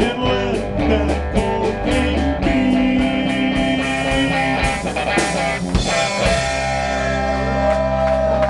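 Live blues-rock band playing: electric guitar over electric bass and a drum kit, an instrumental passage with no vocal line. The steady drum beat thins out about halfway through and the chords are left to ring, as at the close of the song.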